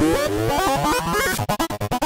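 Psychedelic trance track in a break: the kick drum drops out, leaving electronic synth lines wandering up and down in pitch. About a second and a half in, the sound is chopped into rapid stutters, about ten a second.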